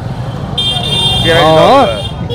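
Busy street noise with a high-pitched, steady electronic tone that starts suddenly about half a second in and holds on, and a voice speaking briefly near the end.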